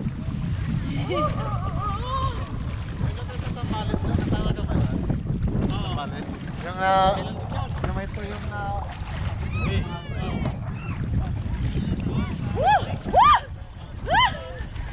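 Wind buffeting the microphone in a steady low rumble over shallow sea water, with people's voices calling out here and there, loudest in a couple of short shouts near the end.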